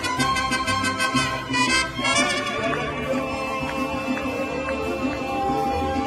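Live mariachi band playing: violins over strummed guitars and a guitarrón bass line that pulses steadily. From about two seconds in, the violins hold long notes.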